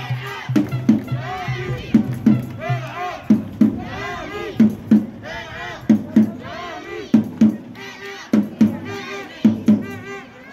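Music with a steady beat of about three pulses a second, mixed with a crowd of voices shouting and calling over it.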